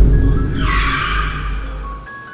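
Bass-heavy music sound effect, with a screech-like noise starting about half a second in and fading out near the end.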